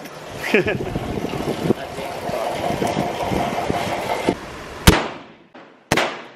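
Two revolver shots about a second apart near the end, each a sharp crack with a short echo off the concrete walls; the first is the louder. Before them, a steady rushing noise with muffled voices.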